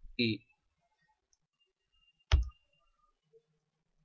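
One sharp, loud click from a computer keyboard as a key is struck, about two seconds in.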